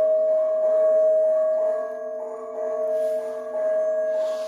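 Music built on a steady held drone tone, with higher notes changing above it every half second or so.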